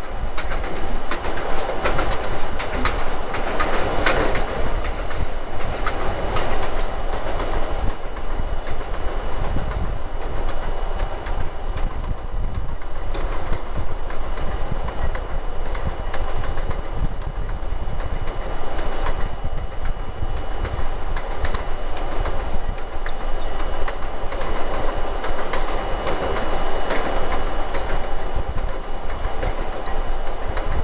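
R32 subway car running on an elevated steel structure: a steady rumble of wheels on rail, with runs of clicking and clacking over the rail joints about two to five seconds in and again near the end.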